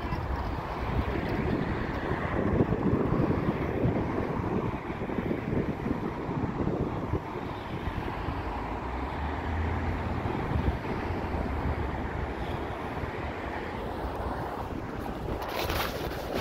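Steady road traffic noise from a busy multi-lane street, with wind buffeting the phone's microphone.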